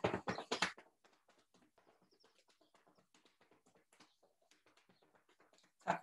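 Flat hands rapidly tapping the legs through trousers: a fast, even run of soft slaps, several a second, loudest in the first second and very faint after.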